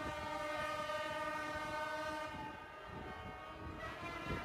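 Many vehicle horns held together in one long, steady blare from a massed tractor protest convoy, over a low rumble.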